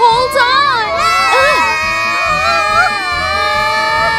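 Several cartoon children's voices yelling together in one long, held cry while sledding too fast downhill.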